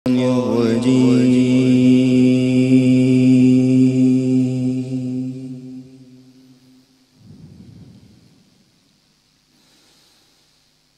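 A single long, deep chanted vocal note held steady in pitch, with a slight wavering at its start, fading out over about six seconds. A brief soft rumble follows.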